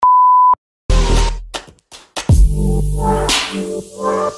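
A single steady high-pitched beep, about half a second long, like an edited-in bleep tone. After a short silence, electronic music with deep bass starts about a second in, with a swoosh about two seconds in.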